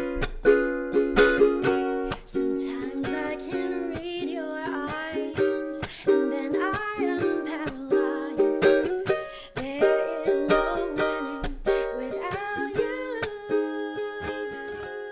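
A ukulele strummed in chords in a steady rhythm, with a woman singing over it from about four seconds in.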